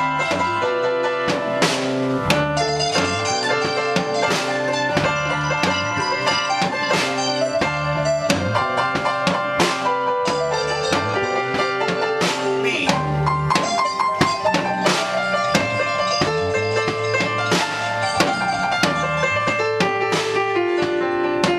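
Small band improvising a jazz-rock jam: electric guitars and keyboard over a drum kit with frequent cymbal and drum hits, playing continuously with a moving bass line.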